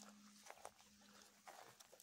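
Near silence: a faint steady low hum with a few faint short ticks.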